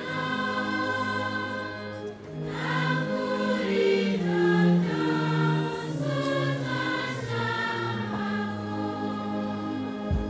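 A choir singing a sacred hymn in long held notes that move in steps from one pitch to the next, with a short dip in loudness about two seconds in.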